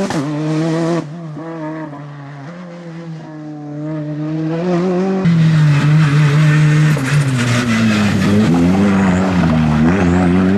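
Hyundai i20 R5 rally car's turbocharged four-cylinder engine revving hard through the gears, the revs rising and falling with each shift. It drops back and sounds more distant from about a second in, then is loud again from about five seconds, the revs falling away and picking up again near the end.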